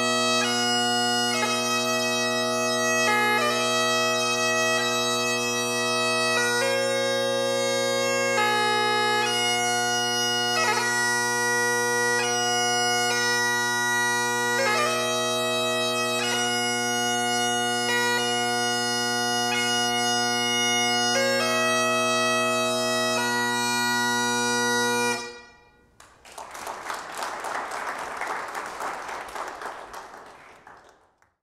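Great Highland bagpipe playing a slow piobaireachd melody on the chanter over steady drones, stopping abruptly about 25 seconds in as the tune ends. Applause follows for the last few seconds, fading out.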